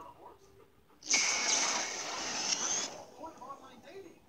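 A loud hissing noise burst from the movie trailer, played through the phone's small speaker, starts suddenly about a second in and cuts off nearly two seconds later, followed by faint trailer voices.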